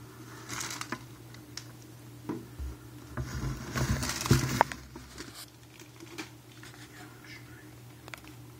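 Rustling and crinkling with scattered short clicks over a steady low hum. The loudest rustle comes around the middle and ends in a sharp click.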